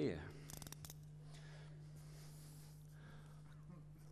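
Utility knife cutting into a cardboard box: a few quick clicks near the start, then the faint scrape of the blade slicing through the card.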